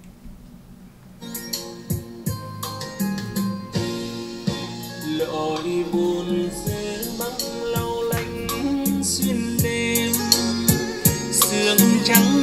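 A song played as a demo through a Temeisheng LA-012 karaoke trolley speaker with a 30 cm woofer. After about a second of near quiet, instruments and drums come in and build, and a singing voice enters near the end.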